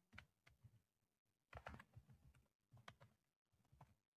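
Faint computer keyboard typing: scattered keystrokes in short, irregular runs.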